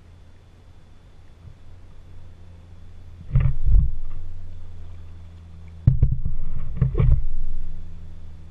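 Paddling noise from a kayak with the camera on its bow: two bursts of low knocks and rushing water, a short one about three seconds in and a longer one from about six seconds, over a steady low hum.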